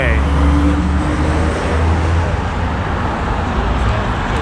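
City street traffic: a motor vehicle's engine runs close by, a low rumble that is strongest for the first two seconds and then eases, over steady road noise.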